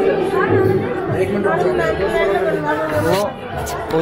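Voices of several people talking at once: indistinct chatter.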